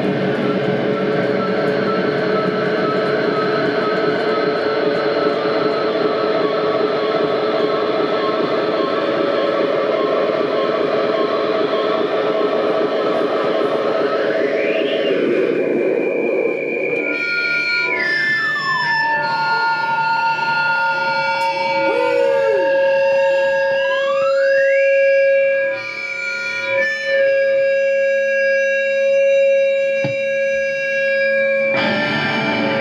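Live black/death metal band playing loud: distorted electric guitars, bass and drums in a dense wall of sound. About halfway through it gives way to long held distorted guitar notes that slide up and down in pitch.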